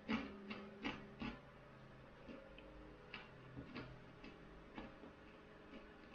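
Faint, irregular soft clicks and smacks of a person chewing food, bunched together in the first second and a half and then more spread out.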